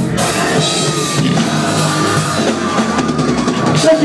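Live rock band playing at full volume: drum kit, guitars and bass, with a long held note wavering on top through most of it.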